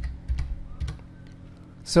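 Computer keyboard keys clicking as a short word is typed: four or five keystrokes within about a second, the first the loudest.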